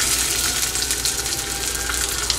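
Marinated shrimp, just added to hot oil in a pan, frying: a steady, dense sizzle with many fine crackles.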